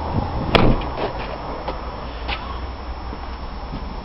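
Land Rover Freelander's tailgate shut with a single sharp slam about half a second in, followed by a few faint ticks over a low steady rumble.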